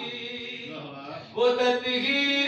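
A man's voice chanting a devotional poem into a microphone over a loudspeaker, with room echo. The voice is low at first, then a loud new held phrase comes in about one and a half seconds in.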